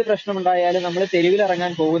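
Only speech: one voice talking without pause apart from brief breaks.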